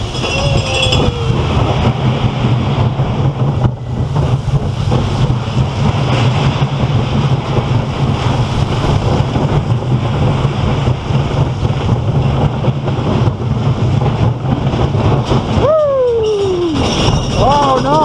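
Small steel roller coaster train running around its track: a steady, loud low rumble of the wheels and the moving car, with wind on the microphone. Near the end comes one short pitched sound that falls steeply.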